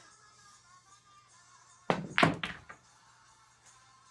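Pool cue striking the cue ball and billiard balls clacking together: a quick run of three sharp clicks about two seconds in, the middle one loudest.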